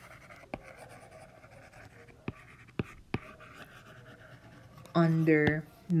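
Stylus tip writing on a tablet's glass screen: faint scratching strokes as a word is written in cursive, broken by a few sharp taps as the pen lifts and touches down.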